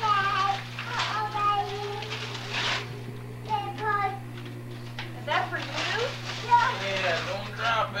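Young children's high-pitched voices babbling and chattering in short bursts, over a steady low hum in the recording.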